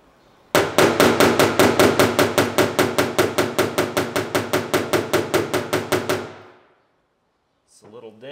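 Blunt-faced hammer tapping lightly and rapidly on the painted sheet-metal deck lid, about six even taps a second, growing fainter and stopping a little after six seconds in. The hammer is tapping down a high spot in the panel.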